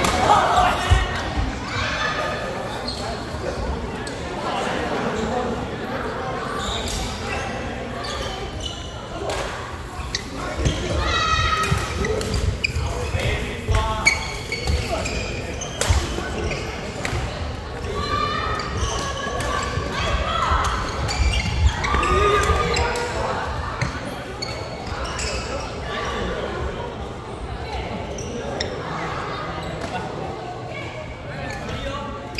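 Badminton play in a large hall: repeated sharp hits of rackets on the shuttlecock and thudding footsteps on the wooden court floor, with voices in the background and the hall reverberating.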